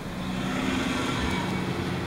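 Vehicle engine running with a steady, even pitch, heard from inside a car's cabin.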